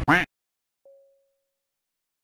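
An edited comic pause: the sound track cuts to dead silence after a brief swooping sound at the very start, then a single soft ding sound effect about a second in that fades out quickly.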